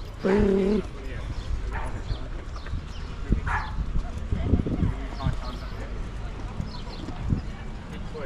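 Footsteps of people walking on a paved path, irregular knocks over a steady low rumble, with a brief hummed note from a voice about half a second in.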